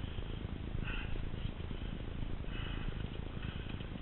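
Steady low rumble of wind on the microphone, with faint brief rustles about a second in and again between two and three seconds.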